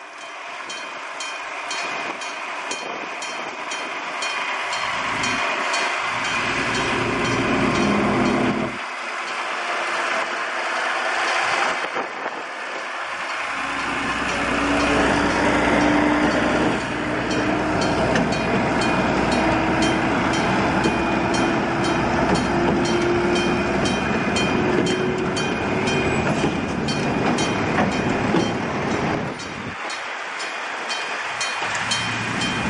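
A two-axle diesel shunting locomotive passes close, its engine running, hauling a train of covered boxcars that roll over the track. From about halfway through, the engine tone climbs slowly in pitch. Meanwhile a level crossing warning bell rings steadily with rapid, even strokes.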